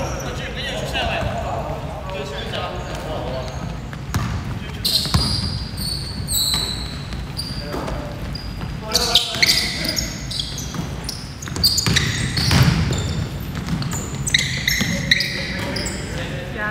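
Basketball game on a hardwood gym floor: the ball bouncing in repeated sharp knocks, with short high squeaks of shoes on the court and players' voices calling out, all echoing in a large hall.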